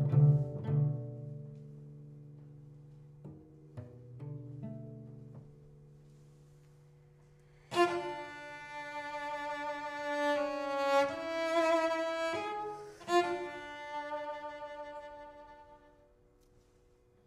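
Solo cello: a few low plucked notes ring and fade over the first several seconds. About eight seconds in, a sudden loud bowed phrase starts, moving through sustained notes with vibrato, then dies away near the end.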